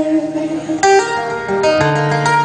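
Steel-string acoustic guitar strummed alone, chords ringing between sung lines, with a fresh strum a little under a second in and a new bass note near the end.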